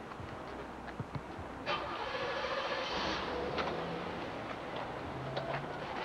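Outdoor traffic noise, with a motor vehicle passing that swells up and fades away in the first half, and a few scattered clicks.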